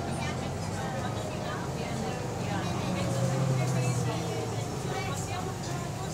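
City bus engine and drivetrain running inside the passenger saloon as the bus drives, growing louder about three seconds in, with a faint whine falling in pitch.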